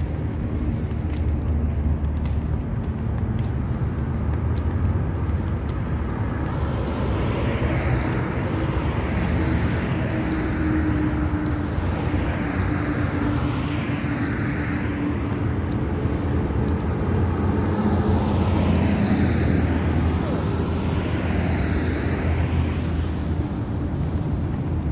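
Road traffic: several vehicles passing one after another over a steady low rumble.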